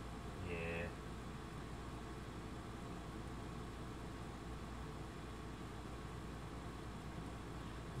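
Steady low background hum and hiss with no events in it. A single short spoken 'yeah' comes about half a second in.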